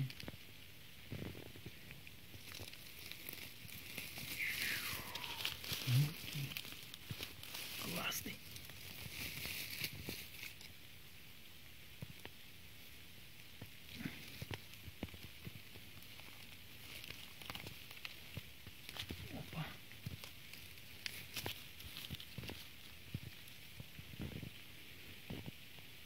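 Rustling and crackling of dry leaves, twigs and moss on the forest floor as hands and feet move through the undergrowth and part the litter around a porcini mushroom, in many short irregular crackles.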